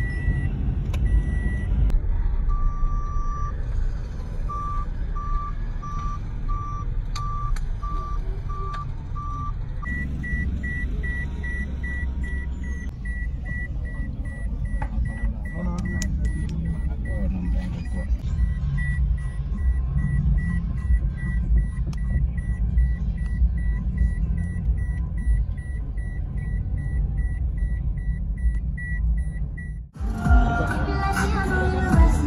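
Low, steady rumble of a moving car heard from inside the cabin, with an electronic warning beep repeating a couple of times a second. The beep drops in pitch about two seconds in and goes back up about ten seconds in.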